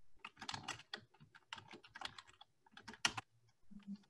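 Computer keyboard being typed on in quick, irregular clusters of key clicks, faint, as picked up by an open microphone.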